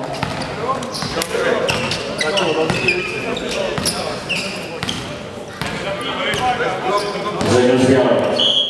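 Volleyball bounced on a sports-hall floor, several sharp thuds with some reverberation, among voices in the hall.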